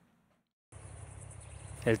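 Brief silence, then from under a second in a faint, steady outdoor ambience with insects chirring. A voice starts just at the end.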